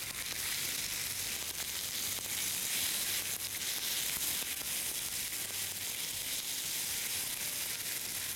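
Thin chicken strips and sliced button mushrooms sizzling steadily in a little olive oil in a frying pan over high heat, being stirred with a silicone spatula.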